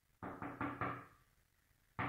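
A rapid run of about four knocks on a door, all within the first second, answered by "come in" shortly after.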